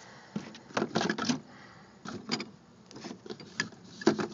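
Wire rack being set down inside a plastic cooler, rattling and knocking against its walls in a few short clatters.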